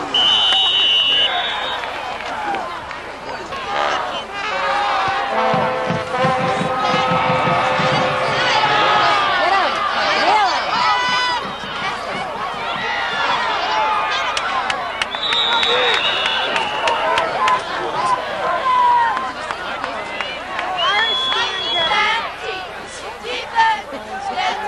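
Football crowd in the stands shouting and cheering, many voices overlapping. High held whistle blasts come at the start, again about fifteen seconds in, and once more near the end.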